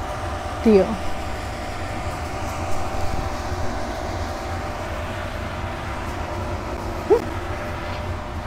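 Steady low mechanical rumble with a faint hum that fades out about halfway through.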